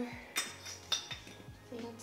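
Clinks and clicks of glass and hard plastic as blender parts are fitted onto a glass blender jar: two sharp clinks about half a second and a second in, then a few lighter ticks.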